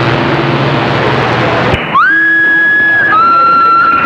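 A CB radio's speaker in receive on a distant skip signal: hissing static with a steady low hum, cut by a click just before the middle. Then a received electronic tone slides up into a held note and steps down to a lower held note.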